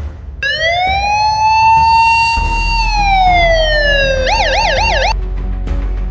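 A siren wails: its pitch rises, holds, then slides down over about four seconds, switches to a fast warble of about four cycles a second, and cuts off suddenly. A low steady drone comes in under it about halfway through.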